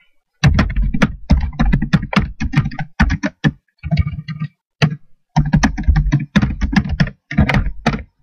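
Computer keyboard typed on in several quick bursts of keystrokes, loud and clicky.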